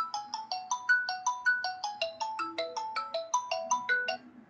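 Phone ringtone playing a quick melody of short electronic notes, about five a second, hopping between a few pitches. It cuts off abruptly at the end, when the call is hung up.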